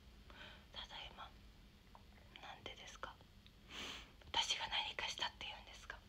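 A young woman whispering in short phrases, louder in the second half.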